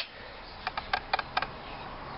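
A few light, sharp clicks, four or five close together in the middle, over a steady faint background hiss.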